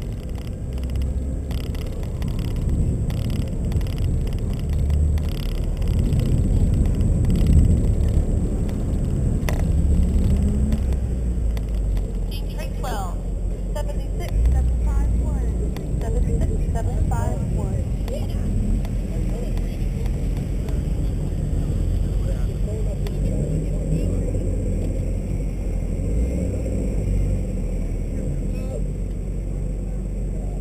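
BMW M3 convertible's engine running at low speed as the car rolls slowly through the paddock, a steady low rumble whose pitch rises briefly about seven seconds in.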